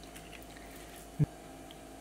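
Faint soft scraping and squishing of a wooden spoon spreading crumbly cauliflower-walnut taco meat onto baked tortilla chips on a sheet pan, with one short low knock a little past the middle.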